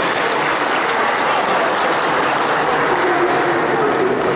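Audience applauding steadily, with voices mixed in.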